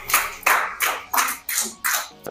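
Hand clapping in applause, an even run of sharp claps at about three a second.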